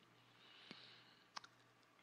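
Near silence in a pause between spoken phrases, with two faint clicks a little under a second apart.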